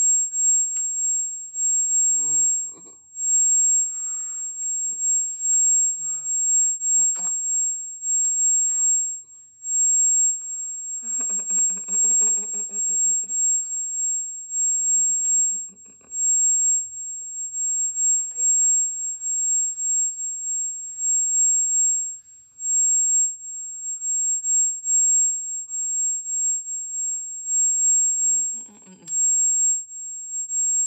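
A steady high-pitched tone runs throughout, with a few short bursts of human voice from the signers mouthing and vocalising as they sign.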